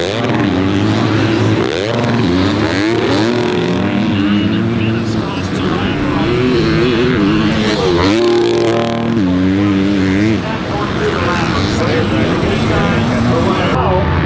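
Several motocross bike engines racing, revving up and down as the riders shift and climb, with the pitch rising and falling over and over. The loudest stretch of revving comes about eight to ten seconds in.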